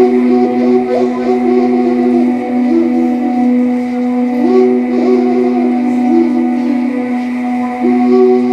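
Romanian caval (long end-blown shepherd's flute) playing a slow melody in long held notes over a steady, unbroken low drone.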